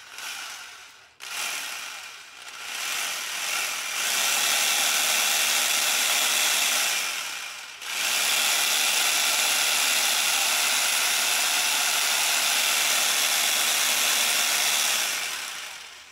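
One-third horsepower corded electric jigsaw running off a 300 W pure sine wave inverter. A short burst, a brief stop, then it winds up and runs steadily, dips for a moment about eight seconds in, runs again, and winds down just before the end.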